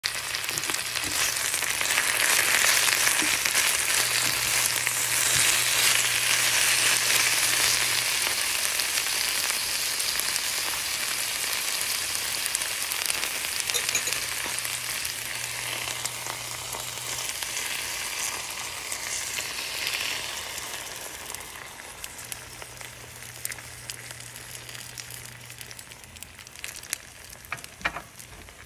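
Spinach and chopped red onion sizzling in a hot frying pan, loudest at first and dying down over the second half as the leaves wilt.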